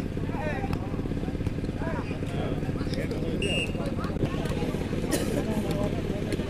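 Scattered spectator voices at an outdoor volleyball match over a steady low mechanical hum, with a brief high whistle-like tone about halfway through and a short sharp burst of noise near the end.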